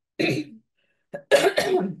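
A woman clearing her throat twice: a short one near the start, then a longer, louder one about a second later.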